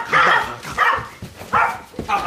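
Small dog barking three times in short yaps.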